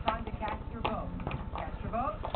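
Indistinct voices from a television in the background, with a few light, sharp clacks.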